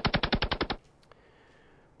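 A rapid burst of automatic gunfire, about a dozen shots a second, cutting off abruptly just under a second in.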